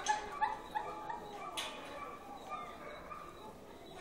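A dog whimpering and yipping in short high-pitched calls, with a couple of sharp clicks in the first two seconds.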